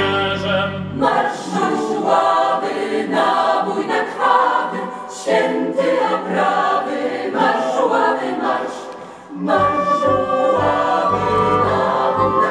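Mixed choir singing a song in several parts. The low accompaniment drops out about a second in, leaving the voices nearly alone, and returns about nine and a half seconds in with a low, pulsing bass line after a brief dip in loudness.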